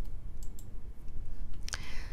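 A few clicks of a computer mouse: a quick pair about half a second in and another near the end, over a faint low background hum.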